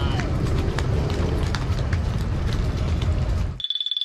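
Wind rumbling on the microphone, with scattered small clicks and knocks. Near the end the sound cuts off suddenly to a steady, finely pulsing high tone.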